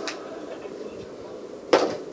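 A small hard object knocked on a table: a faint click at the start and one short, sharp clack near the end, over low room noise.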